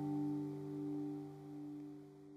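The last acoustic guitar chord of a song ringing out and fading away.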